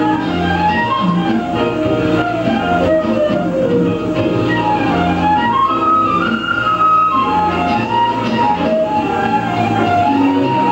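A live jazz band playing an instrumental: a lead melody line winding up and down over electric bass, drums, keyboards and electric guitar.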